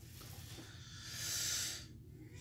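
A soft breath out through the nose, a faint hissing sigh that swells about a second in and fades away.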